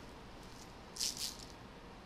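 A brief, high rattle or rustle in two quick bursts about a second in, over quiet room tone.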